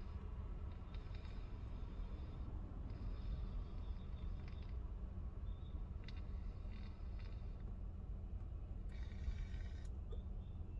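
Steady low hum of a vehicle idling in traffic, heard from inside the cabin, with faint short hissing draws on a tobacco pipe several times.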